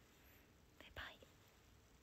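Near silence with one brief, soft whisper from a young woman about a second in.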